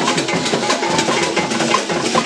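Traditional drums playing a fast, dense rhythm.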